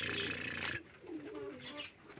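A hiss-like noise for nearly the first second, then domestic pigeons cooing softly.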